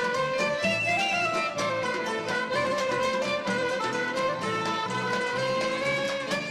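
Traditional Armenian folk dance music from a string ensemble: a bowed kamancheh carries a held, wavering melody over plucked and hammered strings (kanun, oud-type lute, santur) and a steady low pulse.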